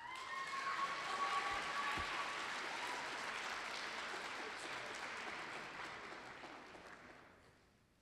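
Audience applauding, fading out near the end, with a high held tone over it for the first couple of seconds.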